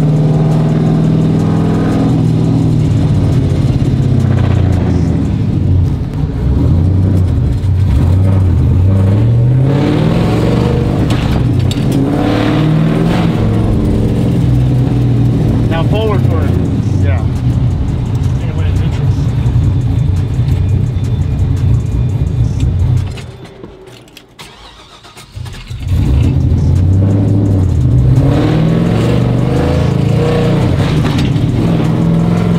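Chevy pickup's engine heard from inside the cab, rising in pitch as the truck accelerates and dropping back at each shift of its sequential T56-style manual gearbox. About 23 seconds in, the sound falls away for a couple of seconds and then picks up again.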